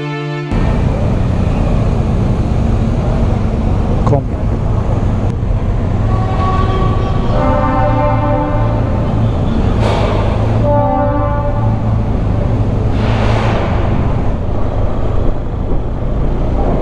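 Music cuts off half a second in, giving way to a BMW R1250 GS's two-cylinder boxer engine running as the motorcycle rolls through a ferry's enclosed vehicle deck, a loud, dense rumble. Horn-like tones sound over it twice, about six and ten seconds in.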